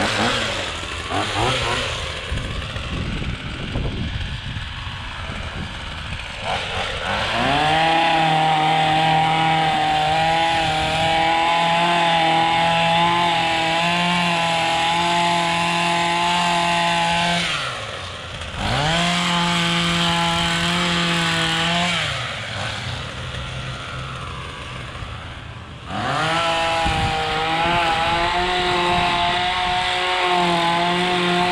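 Gas-powered trimmer powerhead with a hedge-trimmer attachment, idling and then revved to full throttle in three spells: a long one about seven seconds in lasting some ten seconds, a short one just after, and another near the end, dropping back to idle between them as it cuts back ornamental grasses.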